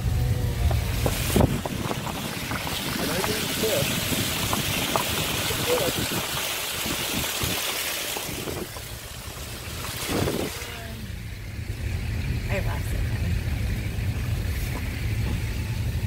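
Interior road noise of a Honda CR-V driving on a wet dirt and gravel road: a steady low rumble with a tyre hiss over it. The hiss eases a little past halfway, and there are a couple of short knocks from bumps.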